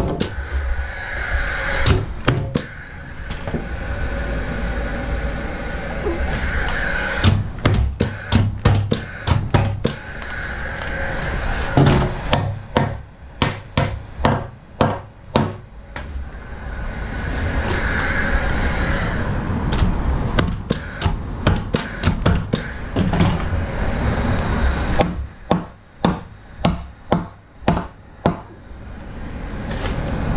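Paslode nail gun firing nails through pine seat boards into the frame: sharp shots in several quick runs, roughly two a second.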